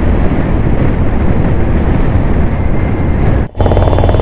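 Loud, steady rush of wind and road noise with a deep rumble from a vehicle travelling fast on a concrete highway. About three and a half seconds in it cuts off abruptly and gives way to a steadier, lower engine hum.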